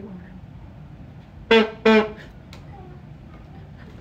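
Two short blasts from the horn built into a Loud Cup drinking tumbler, one steady buzzy note each, about a second and a half in.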